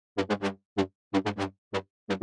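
Synthesizer lead playing a staccato, syncopated riff of about eight short plucked notes, each cut off cleanly with silence between them. It is one of two layered versions of the same patch, made with altered envelopes, unison and filter.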